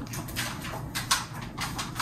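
Faint handling noises: a few light taps and rustles as a hand turns a plastic yogurt tub on a wooden table, between pauses in speech.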